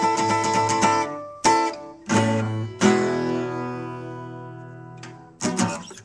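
Acoustic guitar strummed in quick chords, then a few single chord strokes. The chord just before three seconds in is left to ring and die away over about two seconds, and a couple of quick strokes follow near the end.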